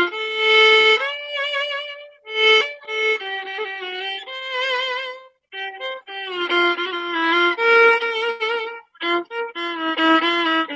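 Solo violin playing a slow song melody. Its held notes waver with vibrato, and there are three brief pauses between phrases.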